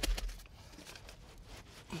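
Heavy natural stone stepper (New York paver) coming to rest on a bed of wet stone dust with a dull thud just at the start, followed by faint gritty scraping as it is shifted on the bed.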